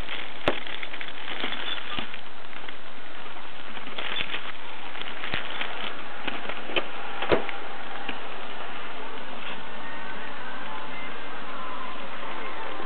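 Steady hiss of the recording with scattered sharp clicks and crackles, the loudest about seven seconds in.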